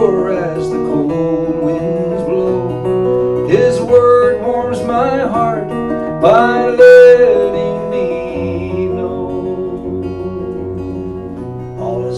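A man singing a worship song while playing an acoustic guitar. His voice drops out about eight seconds in, leaving the guitar playing on alone.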